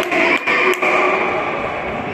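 Din of a futsal game echoing in a sports hall: a general mix of distant voices and movement, with two sharp knocks of the ball being struck, about a third of a second apart, in the first second.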